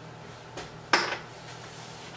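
One sharp clink of kitchenware at the stove about a second in, after a fainter tap, as glass coddling cups are set into a pot of boiling water. A steady low hum runs underneath.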